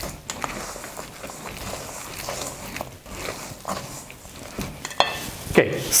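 A spoon stirring a thick, sticky panforte mixture of nuts, candied peel and syrup in a stainless steel bowl. It makes irregular scraping and squishing, with occasional soft knocks against the bowl. A man's voice starts near the end.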